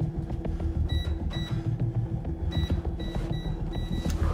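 Electronic safe keypad beeping as its buttons are pressed: six short high beeps, two about a second in, then four in quick succession over the last second and a half.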